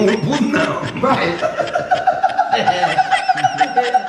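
Several men laughing. From about a second in, one voice holds a long, high, pulsing laugh almost to the end.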